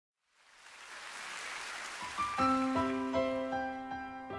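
A wash of audience applause fades in from silence, and about two seconds in a piano begins the song's intro with ringing chords and single notes that follow at a gentle, even pace.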